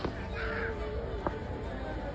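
A crow-like caw about half a second in, over background chatter of people.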